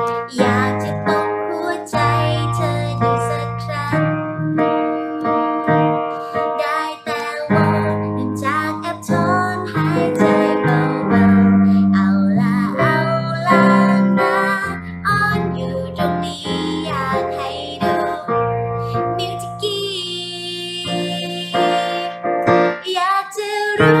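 Electronic keyboard playing a song: sustained chords over low bass notes that change every second or two, with a melody above. A woman's voice sings softly along at times.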